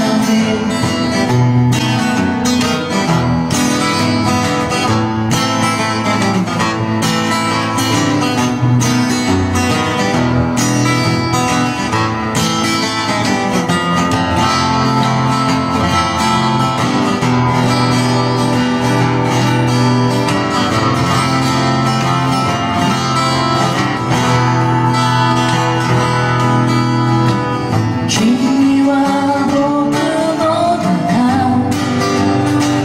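Two acoustic guitars played together live, strummed chords carrying a steady rhythm, with singing over them.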